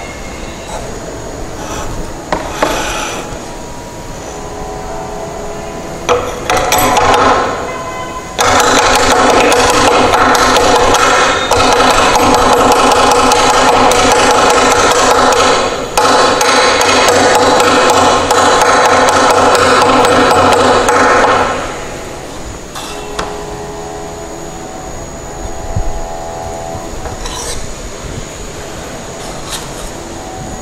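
A steel trowel scraping and knocking as it works cement paste from a plastic tray into a Vicat mould. A loud, steady machine drone with a pitched hum comes in about 8 seconds in and cuts off about 21 seconds in.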